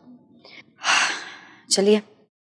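A woman's audible, sharp intake of breath lasting under a second, in a pause between phrases of speech; talking picks up again near the end.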